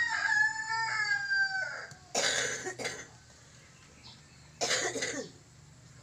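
Ayam Pelung rooster finishing a long, drawn-out crow, held on one note and sinking slightly before it breaks off about two seconds in. Two short, harsh, rasping bursts follow, one just after and one near the end.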